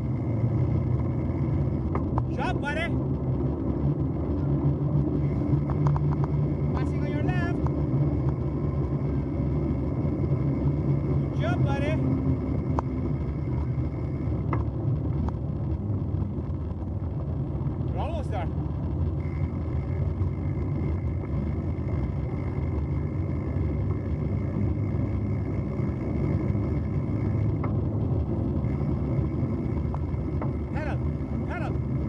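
Steady rumble of bicycle tyres rolling on a gravel path and wind on the microphone while riding, with a few short high chirps now and then.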